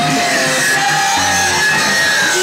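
Live rock band playing loud, with electric guitar and a drum kit.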